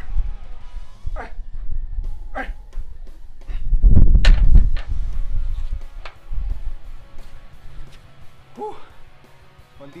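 Over background music, a man gives short effortful exhalations with each landmine press. About four seconds in, the barbell end loaded with iron plates is set down with a heavy thud and a sharp clank.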